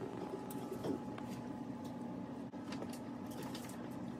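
A steady low hum with a few faint, light clicks and scrapes from a spoon scooping thin batter out of a glass bowl and dropping it into paper cupcake liners in a metal muffin tin.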